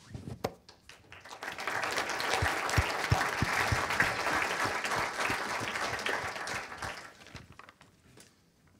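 A room of seated audience members applauding at the end of a talk. The clapping builds up over the first couple of seconds, holds steady, then dies away near the end.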